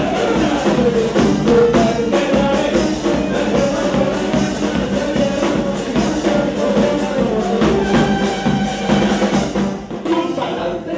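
A charanga brass band playing a lively tune: trumpets carrying the melody over drums and percussion keeping a steady beat.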